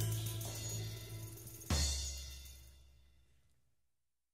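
The end of a blues-rock band's song. A held chord with bass rings out and fades, then about halfway through the band strikes a final accented hit of bass, drums and cymbal that decays away to nothing.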